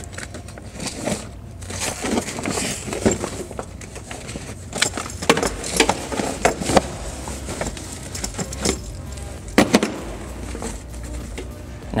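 A fabric storage bag and its contents being handled and pressed into place by hand: irregular rustling, scraping and soft knocks.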